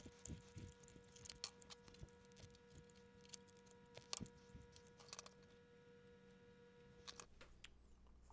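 Near silence: faint scattered clicks and small knocks of a duplex outlet, its wires and a plastic electrical box being handled, over a faint steady hum that cuts off about seven seconds in.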